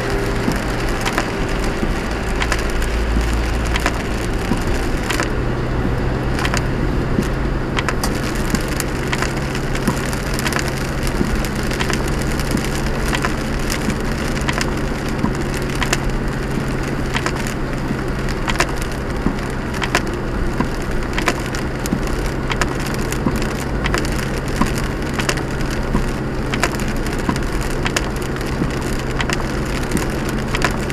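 Car cabin noise in heavy rain: steady road and tyre noise on a wet motorway with a constant crackle of raindrops and spray hitting the windscreen while the wipers run. A low engine hum steps up about five seconds in.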